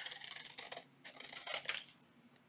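Scissors cutting through coffee-dyed paper glued to a playing card, trimming it around the card's edge, in two short runs of snips with a pause about a second in.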